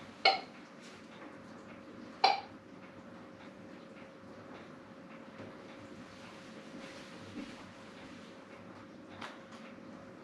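Metal jar lifter and glass canning jars clinking against a pressure canner as jars of lemon curd are lifted out. There are two sharp ringing clinks about two seconds apart, then a few quieter taps over a faint steady hum.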